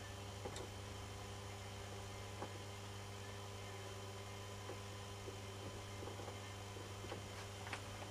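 Steady low electrical hum at about 100 Hz, twice the 50 Hz mains frequency, from the energised three-phase kWh meter and its test load, with a few faint scattered ticks.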